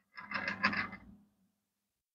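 A brief scraping rub of handling noise, about a second long, starting just after the start.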